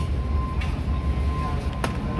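Steady low rumble of store background noise with a thin, steady high tone running through it, and a single sharp click shortly before the end.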